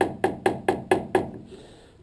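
Wooden stir stick knocking against the side of a plastic mixing bucket of thick, freshly mixed plaster. About six quick, even knocks, roughly four a second, grow fainter and stop a little after a second in.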